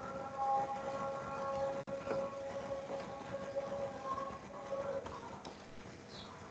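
Islamic call to prayer (adhan) from a distant mosque loudspeaker: a man's voice holding one long, slightly wavering note that fades away near the end.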